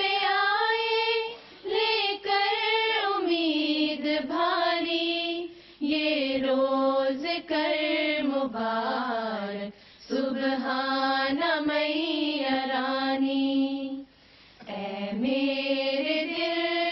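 Female voices singing an Urdu devotional poem (nazm) without instruments, in long melodic phrases broken by short pauses about every four seconds.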